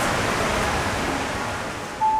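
Steady background noise of a large, busy shopping-centre hall: a wash of room noise and distant crowd, easing off slightly toward the end.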